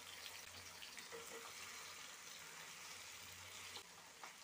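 Faint, steady sizzle of chopped tomatoes frying in oil in a non-stick pan.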